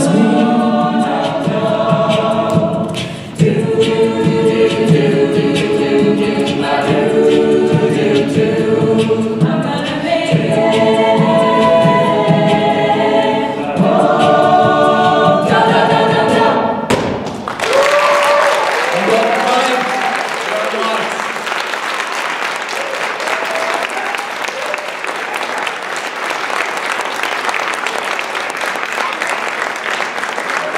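Mixed a cappella group singing in close harmony behind a male soloist, with no instruments; the song ends about 17 seconds in. Audience applause and cheers follow.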